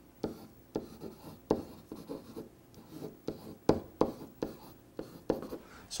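Felt-tip marker writing on a whiteboard: a quick string of short, uneven strokes and taps as letters are written.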